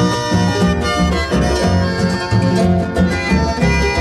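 Instrumental break of a Paraguayan folk song played by a harp-led ensemble, over a steady bass beat.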